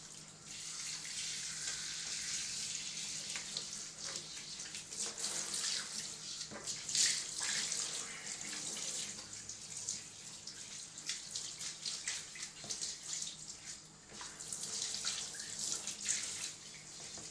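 Water from a handheld sink sprayer hose spraying onto a wet kitten and splashing into the sink basin, a continuous hiss whose splatter rises and falls as the spray moves over the animal.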